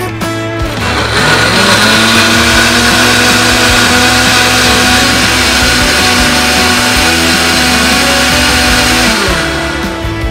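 Electric countertop blender running as it purées a strawberry-banana smoothie. The motor spins up about a second in, runs at a steady high speed, and winds down near the end.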